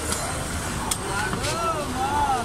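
Busy street-market ambience: a steady crowd murmur over a low traffic rumble, with a sharp click about a second in and a voice calling out in rising-and-falling tones near the end.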